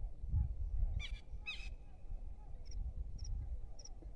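Frogs calling in chorus from a pond, many short repeating calls running on steadily. About a second in, two louder falling calls half a second apart stand out, and a faint high tick repeats less than twice a second in the second half.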